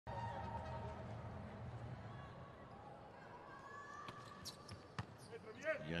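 Volleyball being played in an indoor hall: about three sharp smacks of the ball on hands four to five seconds in, the serve and its pick-up, over a steady hall background with held tones.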